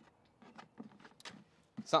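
A wing nut being screwed down by hand on a threaded stud: a few faint, scattered clicks and scrapes against the propane tank cover.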